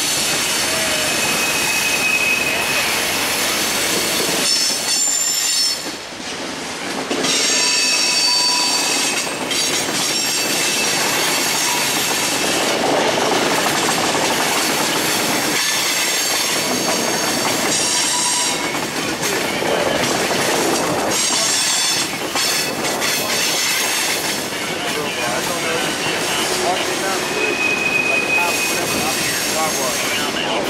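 Freight cars of a passing mixed freight train (gondolas, flatcars, tank cars) rolling by on curved track, a steady loud rumble and clatter. Wheel flanges squeal on the curve, high whines that come and go several times.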